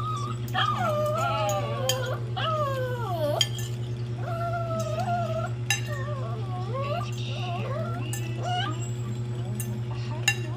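A dog whining in long, wavering whimpers that slide down in pitch, with spoon and fork clinking against a plate now and then. A steady low hum runs underneath.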